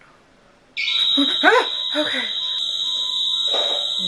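A house burglar alarm goes off suddenly about a second in, sounding one loud, steady, high-pitched tone, with a voice crying out over it.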